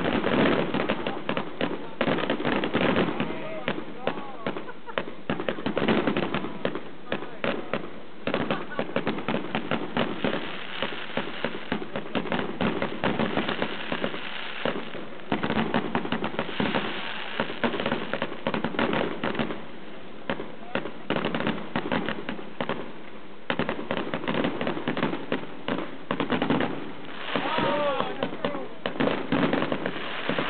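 Fireworks going off all around in a continuous barrage: rapid crackling of firecrackers mixed with the bangs of bursting rockets and shells.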